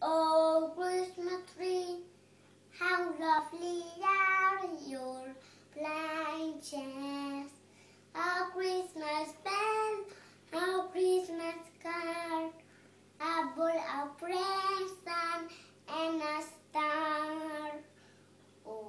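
A young boy singing unaccompanied, in phrases of a few seconds with short breaks between them.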